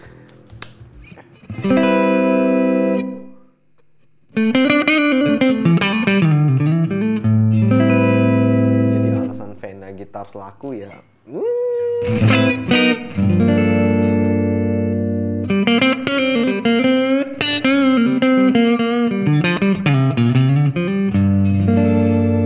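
Fena TL DLX90 electric guitar played clean through its neck P90 pickup, an Alnico 5 single-coil type: chords and melodic phrases, some notes bending and wavering in pitch. The playing breaks off briefly about three and a half seconds in and again around eleven seconds.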